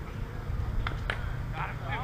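Distant voices of players calling out across a softball field over a steady low rumble, with two short sharp clicks near the middle.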